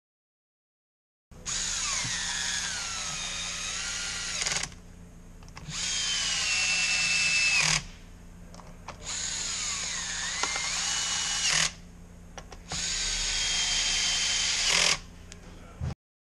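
Cordless drill-driver running screws into the starter housing of a Stihl MS290 chainsaw: four short runs of the motor's whine, each a few seconds long, its pitch dipping and levelling as the trigger and load change.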